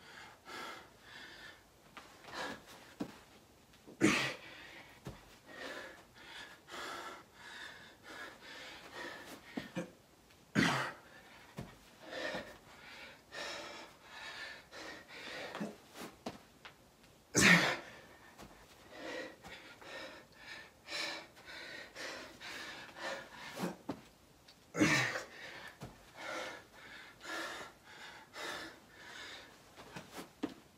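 Heavy, laboured breathing of a man doing burpees without rest. A louder short burst comes about every six to seven seconds, once per rep, over steady panting in between.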